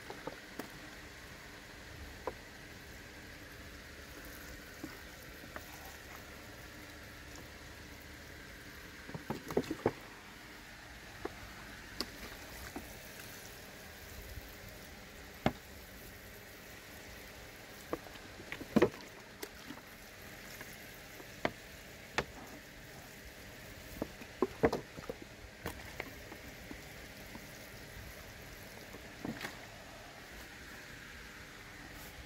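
A squeezed two-liter plastic bottle sprinkling liquid feed onto seedling trays: scattered sharp crackles and knocks from the plastic, the loudest a little past halfway, over a steady low hiss.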